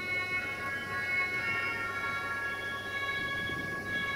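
Traxx electric locomotive's horn sounding one long, steady multi-tone blast as it approaches the station.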